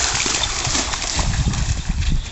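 A dog's paws splashing through shallow lake water as it runs, a quick series of splashes that fades about a second in. A low rumble, like wind on the microphone, takes over in the second half.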